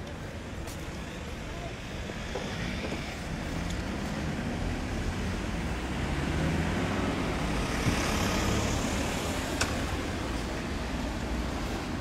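Road traffic noise: a steady low rumble that swells as a vehicle passes about two-thirds of the way through, then eases. A single sharp click sounds near the end.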